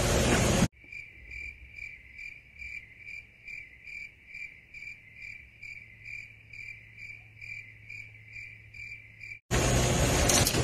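Cricket chirping dubbed in as the stock awkward-silence sound effect: one even chirp about three times a second over a faint steady hum. It starts under a second in, when a loud even noise from the courtroom feed cuts out, and stops near the end when that noise returns.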